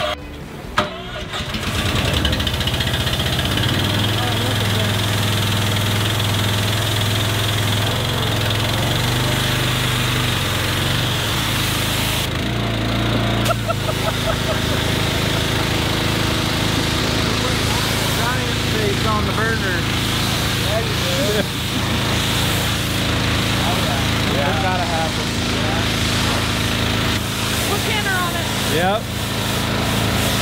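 Pressure washer's engine starting just after a click about a second in, then running steadily. Its note shifts a few times as the spray wand is worked.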